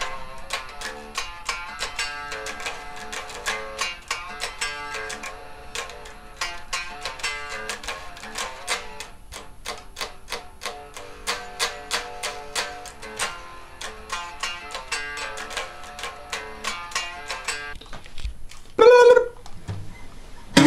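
Electric guitar picking a run of single plucked notes, several a second, at a moderate level. About a second before the end there is a brief, louder sound with a sliding pitch.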